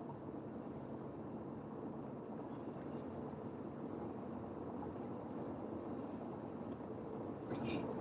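Steady road and engine noise heard inside a moving car's cabin.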